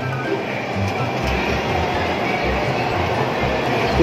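Ring donuts frying in a deep fryer's hot oil, a steady sizzling hiss. Background music with a bass line plays underneath.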